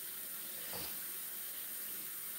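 A steady, even hiss of background noise, with no distinct event standing out.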